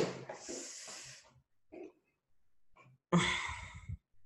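A person breathing close to the microphone: a soft breath just after the talk stops, then a louder, sudden breath near the end that cuts off abruptly.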